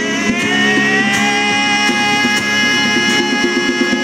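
Instrumental passage by a small live band: strummed acoustic guitar and hand-drum strokes under long, sustained lead notes on electric guitar, one bending slightly upward about a second in.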